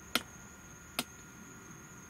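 Two sharp clicks about a second apart from the Sea-Doo dock light switch being flipped, changing the lights from low beam to high beam. Crickets chirp faintly and steadily behind.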